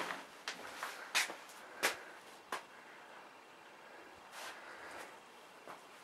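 Four light footsteps at walking pace, about two-thirds of a second apart, then a faint rustle a little after four seconds in.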